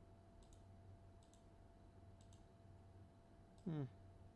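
A few faint, separate computer mouse clicks over a low steady hum.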